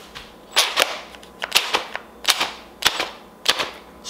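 Cordless drill's electric motor switched on in about nine short, sharp, irregular bursts while its chuck is held fast by hand. It gives a brief high whine each time, standing in for the motor of a jammed garbage disposal that is powered but cannot turn.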